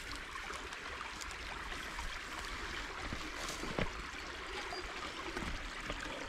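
Small shallow creek trickling steadily over rocks. One short soft knock a little under four seconds in.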